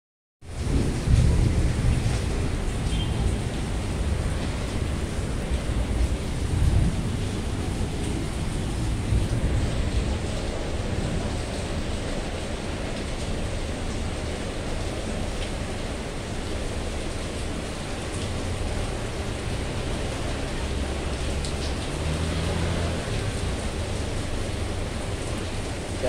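Heavy rain falling steadily, a dense hiss with an uneven low rumble underneath.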